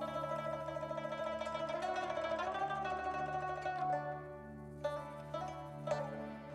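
Rubab, a plucked lute with sympathetic strings, playing a fast tremolo melody over a steady low drone. About four seconds in the tremolo stops and single plucked notes follow.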